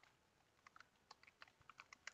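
Faint computer keyboard typing: a quick run of about a dozen soft keystrokes.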